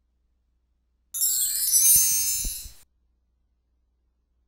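Slideshow animation sound effect: a high, glittering chime with sweeping tones, starting about a second in and cutting off abruptly after under two seconds.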